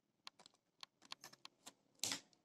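Pen writing on paper: about a dozen faint, short, irregular clicks and taps as figures are written.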